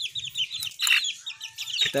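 A brood of month-old gamefowl chicks peeping, a quick, continuous stream of short high-pitched calls, with one louder call or rustle about a second in.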